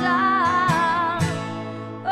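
Pop song with a woman singing held, wavering notes over acoustic guitar.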